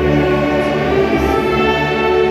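A church orchestra of clarinets, saxophones and brass playing a hymn in sustained chords, with a congregation singing along.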